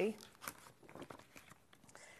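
Faint rustling of a paper instruction sheet being handled and slid on a cutting mat, with a few soft clicks.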